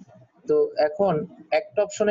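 Speech only: a voice talking, starting about half a second in after a brief pause.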